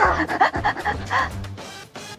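A woman laughing in short bursts over background music; the laughter dies away after about a second and a half, leaving the music.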